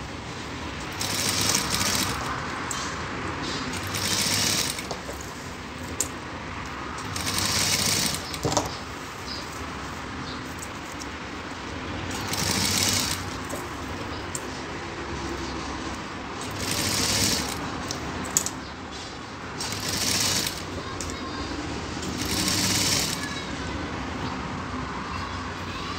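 Sewing machine stitching in short runs of about a second each, seven in all, while piping is topstitched around a curved neckline. Between runs there is a quieter steady sound and two sharp clicks.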